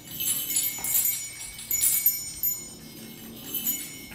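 Bright metallic jingling in a string of irregular shakes, each with a short ringing shimmer.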